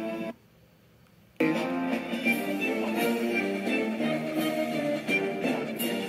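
Music with a melody of held notes, broken by about a second of near silence shortly after the start before it comes back.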